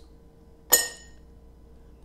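One sharp, ringing clink about two-thirds of a second in, too loud: a mussel shell striking the glass baking dish.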